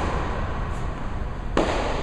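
A tennis ball struck by a racket about one and a half seconds in, a sharp pop with a ringing echo off the indoor hall, over a steady low hum of the building.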